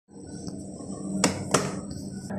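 Elevator hall call button pressed to call the car down: two sharp clicks about a third of a second apart, over a steady low hum.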